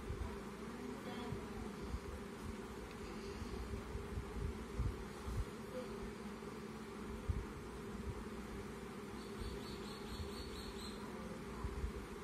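A steady low hum, with soft bumps every so often.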